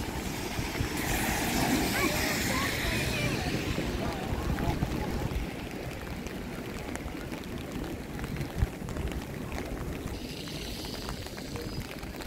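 Rainy city-street ambience: passersby talking during the first few seconds over a steady wet hiss and a low rumble.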